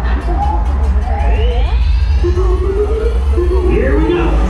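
Music playing over the steady low rumble of the Slinky Dog Dash roller coaster train as it moves, with riders' voices.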